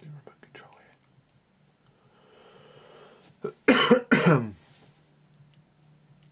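A man coughs twice in quick succession about halfway through, after a long breathy sound. A few faint clicks come near the start.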